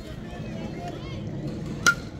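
A metal baseball bat striking a pitched ball near the end, one sharp ping with a brief ring, over faint chatter from spectators.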